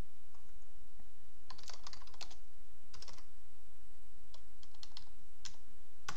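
Computer keyboard typing: three short runs of keystrokes, about one and a half, three and four and a half to five and a half seconds in, over a steady low hum.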